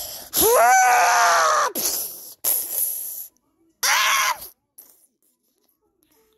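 A person's high-pitched scream, rising then falling in pitch, lasting about a second and a half, followed by rough noisy sounds and a second, shorter cry about four seconds in.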